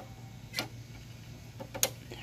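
Two light clicks about a second apart from the metal drive-control bail and handlebar of a Craftsman self-propelled push mower being worked by hand, over a low steady hum.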